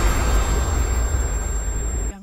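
Cinematic logo-reveal sound effect: a deep, noisy rumble with a hiss over it, slowly dying away after a swell.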